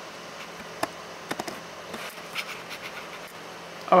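Steady faint hiss of room noise with a few light clicks and scratches, like small handling noises.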